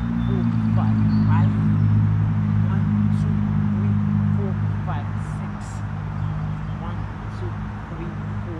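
A steady low mechanical hum that swells over the first seconds and eases after about five, with birds chirping in short calls throughout.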